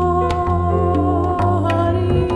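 Live small jazz band playing: a long held melody in two notes over double bass notes that change about every second, with a few light percussion taps.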